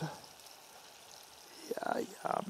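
Mostly quiet; near the end, a short crackling as a whole pecorino wheel splits apart under a knife pressed down into it.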